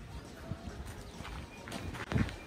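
Faint footsteps on a hard floor, a few soft knocks, with low voices in the background.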